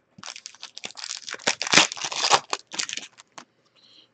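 Crinkling and crackling of a foil trading-card pack wrapper handled along with the cards, a quick, irregular run of crackles that is loudest in the middle and thins out near the end.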